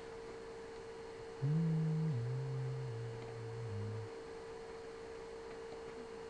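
A person humming a few low notes for about two and a half seconds, starting about a second and a half in and stepping down in pitch. A faint steady electrical whine runs underneath throughout.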